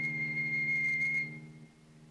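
Concert flute holding a single very high, whistle-like note, reached by a rising run, over a sustained cello note; the flute note stops about a second and a half in and the cello note carries on quietly.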